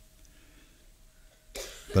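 A pause in a man's talk: about a second and a half of near quiet, then a short breathy noise from the man into his headset microphone about a second and a half in, just before he speaks again.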